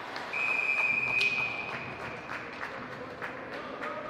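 Ice hockey referee's whistle: one steady high note held for about a second and a half, over scattered sharp clicks of sticks and skates on the ice.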